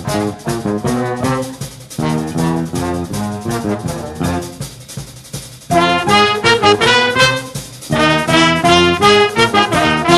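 Jazz big band playing: saxophones, trumpets and trombones over piano, electric bass and drum kit. The brass comes in loud about halfway through, and again with a fresh loud entry near the end.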